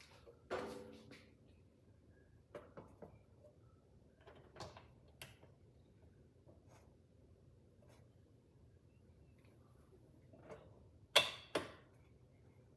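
Light knocks and clicks of a stainless steel stovetop kettle being handled and set down on an electric stove, with its controls being worked. There is a ringing metal knock about half a second in, and two sharp clicks close together near the end are the loudest.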